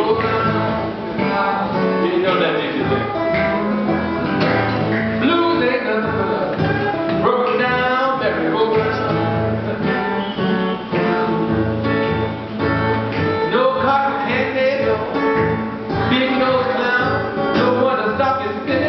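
Acoustic guitar played live in a blues style, with a man singing over it.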